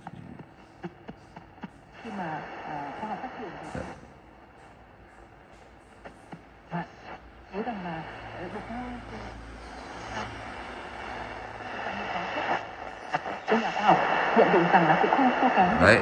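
National Panasonic RF-858D portable radio tuned to a shortwave station: a broadcast voice comes through faint over hiss, fading in and out, and grows louder near the end. The weak, noisy reception is typical of the shortwave band.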